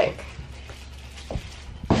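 Quiet room tone with a steady low hum, broken by a soft knock about a second and a half in and a sharp click just before the end.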